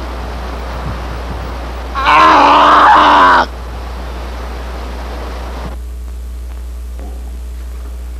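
A man lets out one loud, drawn-out groaning cry lasting about a second and a half, starting about two seconds in. It sits over a steady low hum.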